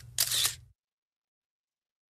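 Camera shutter sound effect as a photo is taken: two quick clicks within the first second.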